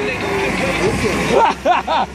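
Street traffic: a motor vehicle passing close by, its noise swelling and fading over about a second, with people's voices over it near the end.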